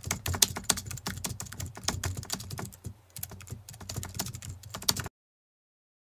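Keyboard typing sound effect for on-screen text typing in: rapid, irregular key clicks that cut off suddenly about five seconds in.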